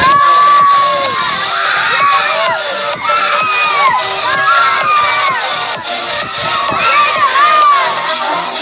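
A group of children shouting and cheering, many high voices overlapping in yells that rise and fall.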